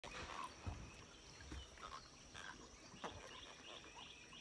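Faint outdoor animal chorus: a steady high-pitched drone with scattered short chirps, and a few low bumps.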